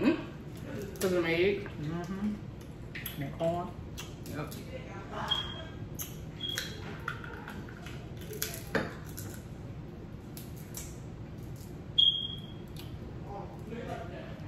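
Close-up eating sounds: crab legs and shells being cracked and picked apart by hand, heard as many small clicks and snaps. There are a few short high-pitched pings of a dish or glass being touched, the loudest near the end, and brief murmured voice sounds early on.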